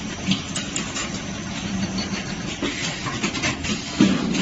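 Beetroot peeling machine running: a steady motor hum with irregular short knocks and rattles over it.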